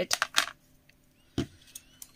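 Small pump spray bottle of white ink spritzed a few quick times onto a clear plastic lid, followed by a single knock about one and a half seconds in.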